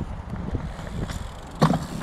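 Low rumble of fat-bike tyres rolling on a dirt trail, mixed with wind noise on the microphone and scattered light clicks, with one short loud thump about one and a half seconds in.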